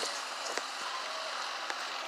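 Fingers handling a phone close to its microphone: a steady hiss with a few faint clicks.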